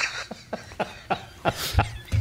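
A few short, breathy vocal bursts from a man, like stifled chuckles, with the strongest about one and a half seconds in.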